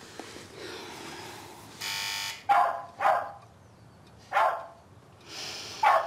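An electric doorbell buzzes once for about half a second, then a dog barks four times in short, separate barks.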